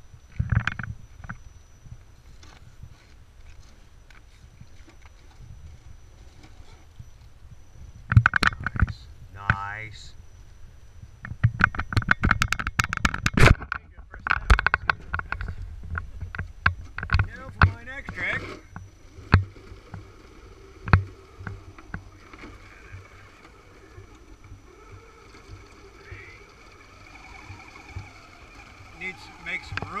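Scale RC rock crawler clambering up a granite crack: irregular clunks, knocks and scrapes of its tyres and chassis against the rock, coming in bursts, busiest about a third of the way in and again just before the halfway point.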